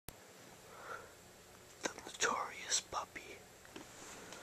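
A person whispering a few words, about two seconds in.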